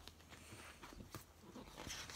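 Near silence: room tone with a few faint clicks and rustles.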